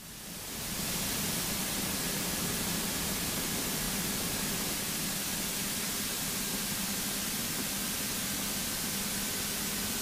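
Steady rushing hiss of airflow and engine noise in a light aircraft cockpit, with the engine throttled right back for a practice forced-landing glide. It fades in over about the first second, then holds even.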